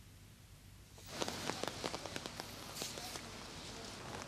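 Near silence for about a second, then rain on a wet city street: a steady hiss with many light ticks of drops.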